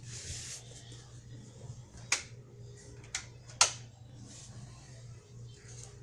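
Three sharp clicks, the first about two seconds in and the last two half a second apart, over a steady low hum and faint hiss.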